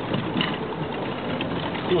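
Car engine and road noise heard inside the cabin while driving, with faint voices in the background.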